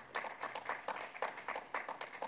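Sparse applause: a few people clapping, the separate claps heard several times a second.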